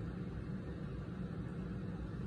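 Room tone: a steady low hum with faint hiss, and no distinct event.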